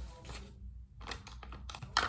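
Clear plastic pencil box and pens being handled: a few faint clicks, then a quicker run of light plastic clicks and rattles in the second half, ending on a sharper click.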